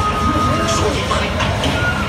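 Buzz Lightyear Laser Blast ride vehicle running steadily along its track, a continuous low rumble. Electronic tones from the ride sound over it, one held for about a second from the start and a short rise-and-fall in the middle.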